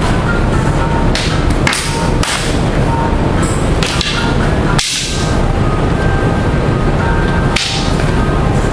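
Sparring sticks striking in a stick-and-dagger bout: about seven sharp cracks, a cluster in the first half with the loudest about five seconds in and another near the end, over a steady loud background noise.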